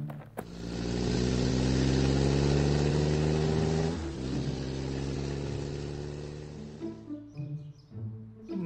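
A motor vehicle engine sound effect: a click, then the engine running steadily for a few seconds, with a shift in its pitch about halfway. It then fades away as the vehicle leaves.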